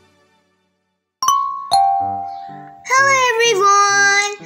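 A two-note chime, the second note lower, like a 'ding-dong', rings out about a second in. Light intro music follows, with a high voice coming in over it near the end.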